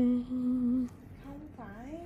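A woman humming a steady, level note, held, briefly broken and taken up again for about half a second more. Near the end her voice rises and falls in a short gliding sound.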